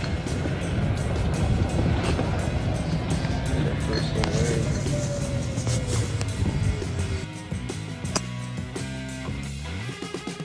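Background music over the running and rolling noise of a moving golf cart; the cart noise drops away about seven seconds in, leaving the music clearer.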